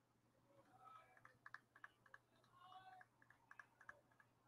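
Near silence, with faint quick clicks in two short clusters like keys being typed on a computer keyboard, and a few faint voice-like tones in the background.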